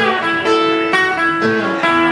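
Acoustic guitar playing live, with a new note or chord struck about every half second.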